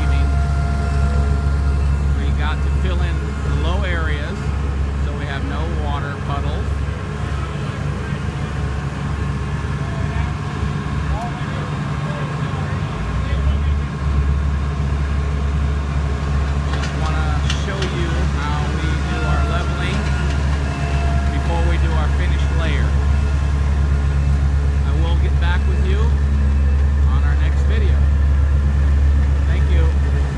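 Diesel engines of asphalt paving machinery, small tandem rollers and an asphalt paver, running with a deep steady rumble that eases for several seconds about a third of the way through. Indistinct voices are heard over the engines.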